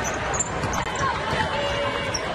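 A basketball being dribbled on a hardwood court against steady arena crowd noise.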